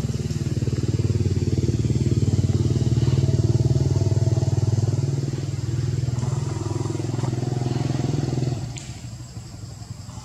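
An engine running steadily close by, a rapid low throb, which cuts off about eight and a half seconds in, leaving a quieter background.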